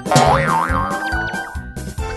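Cartoon background music with a springy "boing" sound effect near the start, its pitch wobbling up and down twice.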